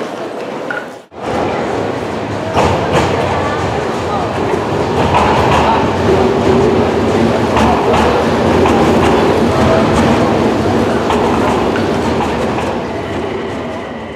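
Toei Mita Line subway train running into the platform and slowing, a loud steady rumble of wheels and motors that starts about two seconds in after a short break.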